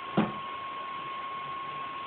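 Quiet room tone with a steady high-pitched whine, broken once by a short sharp sound just after the start.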